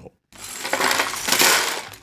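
A clear plastic bag being handled and shaken close to the microphone, a dense crinkling rattle of many small clicks. It starts about a third of a second in and is loudest around the middle.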